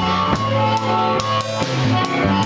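A live slow blues band playing: electric guitar and bass over a drum kit keeping a steady beat, with cymbal strokes.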